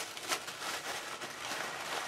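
Faint rustling and handling noise from hands moving over paper and packaging on a tabletop.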